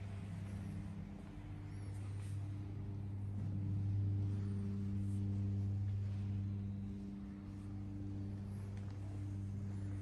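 Steady low hum of running electric machinery, with a few overtones above it, swelling slightly about four seconds in and easing off after about seven.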